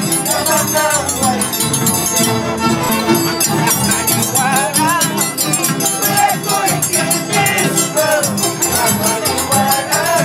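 Andean harps and violins playing a lively huayno, over a continuous fast clinking of metal, typical of a scissors dancer's tijeras struck in time with the music.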